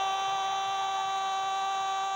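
A football commentator's drawn-out "gol" cry for a headed goal, held on one long steady high note.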